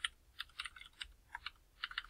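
Typing on a computer keyboard: irregular key clicks in short runs, with a brief pause about one and a half seconds in, then a quicker run of keystrokes near the end.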